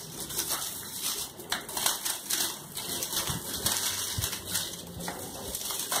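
Hands crumbling and stirring dry feed in a plastic bucket of mealworm bedding: a run of small, irregular crunching and rustling crackles.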